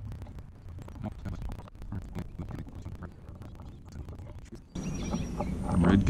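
Faint handling noise of electrical wires and a wire connector being worked by hand: many small clicks and rustles. Near the end a louder steady rush of background noise sets in.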